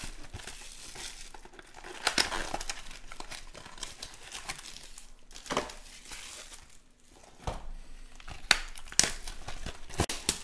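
Clear plastic shrink-wrap crinkling in irregular bursts as it is crumpled by hand, with a few sharp clicks and taps in the last few seconds as card packs and a cardboard box are handled.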